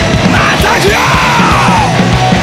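Hardcore punk/metal band playing loud and fast: pounding drums and distorted guitars, with a yelled vocal that swoops up and back down from about half a second in until near the end.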